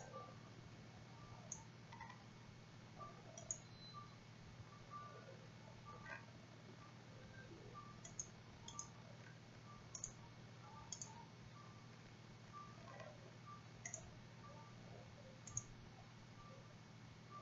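Faint, scattered computer mouse clicks, irregular and a second or two apart, over a low steady electrical hum.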